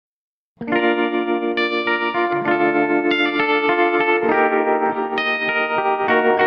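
Electric guitar playing a slow intro of picked, ringing chords, with no vocals. It starts about half a second in, after silence.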